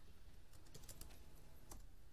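Faint computer keyboard typing: a quick run of keystrokes from about half a second to a second in, and one more keystroke near the end.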